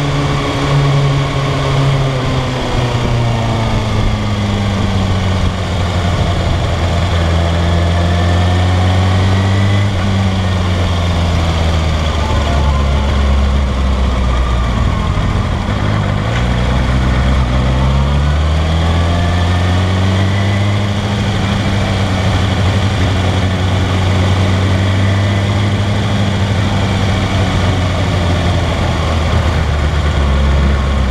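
Kawasaki ZX-6R's inline-four engine running at low revs on a slow ride, heard from a camera mounted on the bike. Its note falls and rises several times as the throttle is closed and opened, and settles lower near the end.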